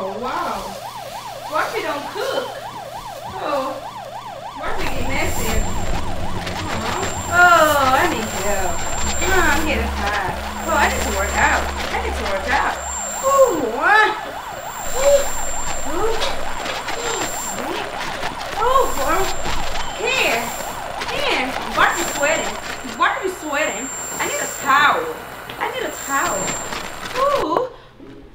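A siren whose pitch keeps sweeping up and down, wavering quickly at first and then in slower rising and falling wails. A low steady hum comes in about five seconds in.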